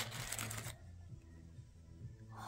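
Plastic toy wrapper crinkling as it is pulled open, stopping within the first second; after that it is quiet apart from a low steady hum.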